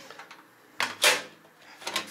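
Metal-framed window being pulled shut: two short scraping clatters of the frame and latch, one about a second in and one near the end.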